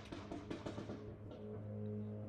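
A steady, unchanging low drone of engines, with a few soft handling clicks over it.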